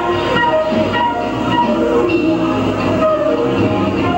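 Live jazz band playing: a woodwind lead holds long melody notes over electric guitar, drums and bass. The sound is a dull camcorder recording with the top end cut off.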